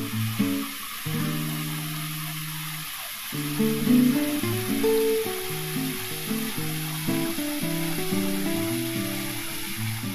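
Background music of plucked acoustic guitar notes over the steady hiss of a small rock waterfall splashing into a garden pond.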